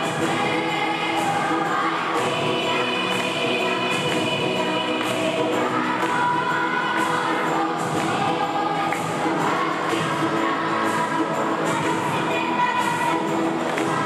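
Children's choir singing, holding long notes, over an accompaniment with a light, regular beat.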